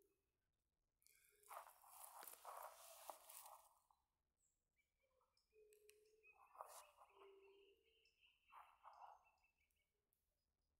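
Near silence, with faint footsteps and rustling in the grass as the spiky log is picked up and handled, in two spells, and a few faint short tones.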